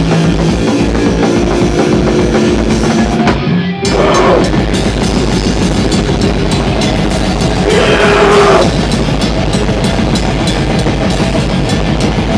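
Live hardcore punk band playing loud: drum kit, electric guitar and bass. The sound thins out briefly about three and a half seconds in, then the band comes back in with fast drumming.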